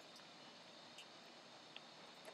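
Near silence with a few faint ticks from a metal matrix band retainer as its larger nut is turned to tighten the band around the tooth.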